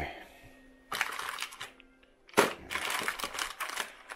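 Plastic protein-bar wrappers crinkling and rustling as a hand rummages through a drawer packed with bars, in two spells, the second one longer.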